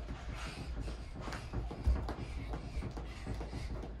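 Skipping rope on carpet: soft, irregular thuds of feet landing and the rope passing, over a low steady rumble.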